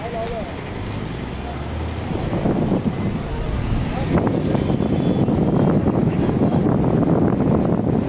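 Turbulent river water below a dam spillway rushing steadily, growing louder between about two and four seconds in, with wind on the microphone.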